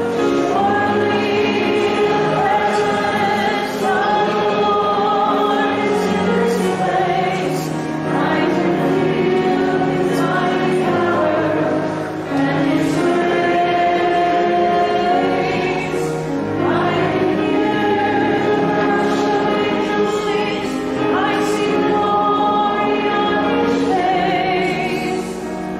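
A choir singing a hymn.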